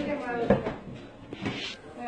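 Indistinct voices of people talking in a small room, with one sharp knock about half a second in.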